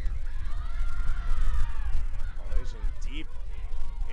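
Pitch-side ambience of an outdoor soccer match: a steady low rumble with a long drawn-out shout from the field in the first couple of seconds, then short calls. The commentator's voice comes in near the end.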